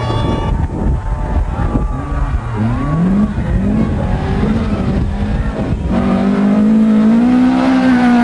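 Nissan 120Y drift car's engine revving up and down in several quick rises and falls, then held at a high, slowly climbing pitch for the last couple of seconds.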